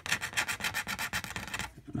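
A coin scratching the coating off a lottery scratch-off ticket, in rapid back-and-forth strokes about ten a second. The scraping stops shortly before the end.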